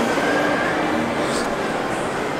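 Steady background noise of a busy shop: a continuous hiss and rumble with faint distant voices.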